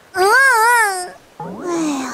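A cartoon character's drawn-out "mmm" moan, its pitch wobbling up and down, in a grudging tone. About a second and a half in comes a quieter sound that slides downward in pitch, with a hiss over it.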